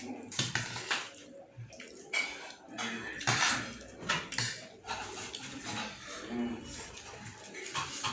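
A metal spoon clinking and scraping against a metal plate during a meal, in a string of irregular short clinks.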